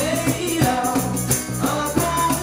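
Live acoustic band playing a song: a male lead voice singing over strummed acoustic guitars, bass and cajon, with a tambourine shaken in time.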